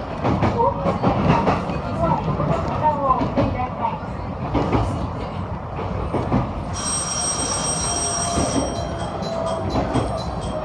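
Train running slowly into a station, with a steady rumble of wheels and car body and clicks from the track. Just before two-thirds of the way through, a loud electric platform bell rings for about two seconds. After it comes a quick repeating chime.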